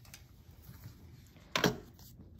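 Quiet handling of paper and craft supplies on a plywood board, then a single sharp knock on the wood about one and a half seconds in as the stapler and paper are brought to the board.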